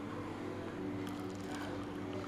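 Steady room background with a low hum and a few faint sustained tones, without any distinct event.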